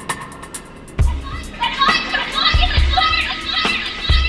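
Electronic downtempo track with a deep drum-machine kick and ticking hi-hats. A sampled field recording of many chattering voices comes in over the beat about a second and a half in.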